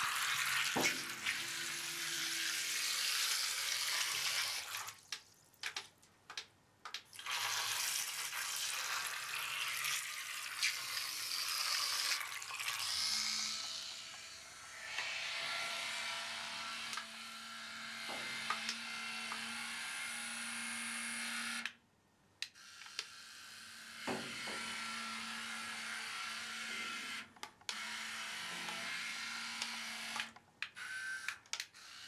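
Tiny electric propeller motors of a 12 cm remote-control toy submarine whirring as it churns through bathtub water. The whir stops and restarts a few times as the controls are worked, and a low steady hum joins it from about halfway through.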